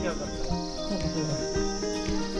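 Crickets chirring steadily in a high, even band, with background music underneath.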